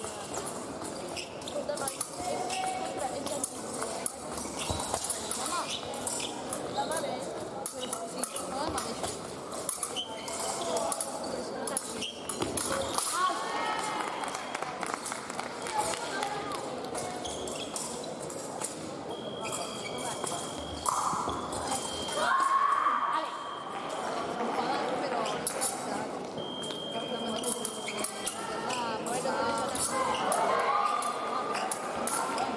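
Fencing-hall sound during an épée bout: quick footwork and stamps on the piste and clicks of blade contact, over a hubbub of voices in a large, echoing hall. Steady electronic tones from a scoring machine sound a few times, the longest for several seconds in the second half.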